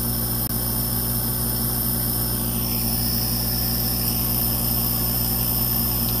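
Steady machine hum from running workshop equipment: a constant low drone with a faint high whine above it, unchanging throughout.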